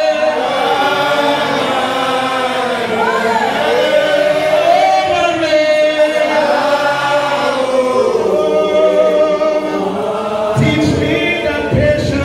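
Congregation singing together, with a man's voice on a microphone leading; long, drawn-out notes that slide between pitches, with no instruments.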